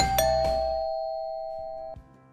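Two-note doorbell chime: two strikes a fraction of a second apart, ringing and fading, then cut off just before the end. The last of the background music fades out under it.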